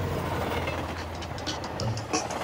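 A steady low rumble with a noisy haze and scattered sharp crackles and clicks.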